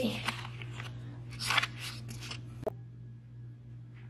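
Handling noise from a camera being moved and set down: a few short scraping rustles and knocks on the microphone over a steady low hum. A sharp click comes a little after halfway, then only the hum.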